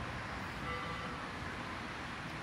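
Steady background rumble of distant traffic, with a faint drawn-out tone for about a second midway, such as a far-off horn.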